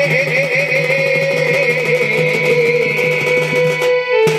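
Live folk music: a wavering, ornamented melody over a steady low drone and a regular beat, stopping abruptly near the end.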